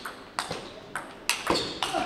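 Table tennis ball struck back and forth in a fast rally, bouncing off the bats and the table: a quick run of sharp ticks, about five in two seconds, the loudest about one and a half seconds in.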